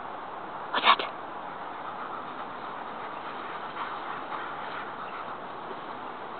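A young Rottweiler gives one short, loud alert bark about a second in, then there is only faint background.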